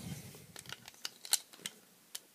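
Plastic Lego pieces clicking and tapping as a minifigure is fitted into a small brick build by hand: about half a dozen sharp little clicks, the loudest just past halfway.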